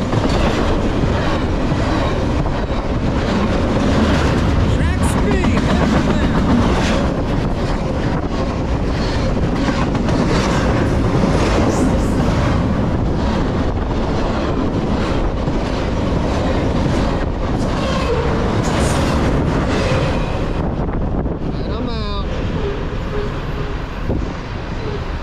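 Double-stack intermodal container well cars of a Norfolk Southern freight train rolling past close by at speed: a steady, loud rumble with wheels clicking over rail joints. It eases slightly in the last few seconds as the end of the train goes by.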